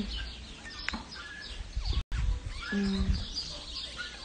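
Small birds chirping in short high calls, over a low rumble on the phone's microphone. A brief hummed voice sound comes about three seconds in.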